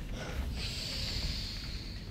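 A long, breathy rush of breath, like a drawn-out gasp or exhale, starting about half a second in and fading out over about a second and a half.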